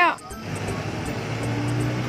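A motor scooter approaching along the road, its engine running with a steady low hum that grows gradually louder from about half a second in.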